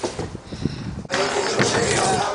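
Stunt scooter riding on a plywood ramp: a few light clacks, then about a second in a sudden, louder, steady rumble of the wheels rolling over the wood.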